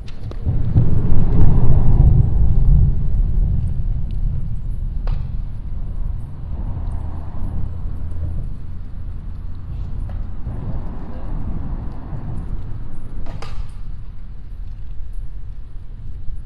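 A low rumble, loudest in the first few seconds and then steady, with a sharp click about a third of the way in and another late on.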